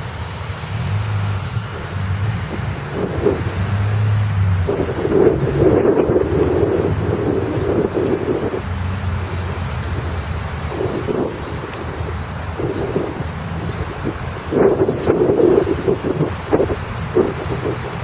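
Wind buffeting the camera microphone in irregular gusts over a steady outdoor rushing background. The strongest gusts come about five seconds in and again near the end.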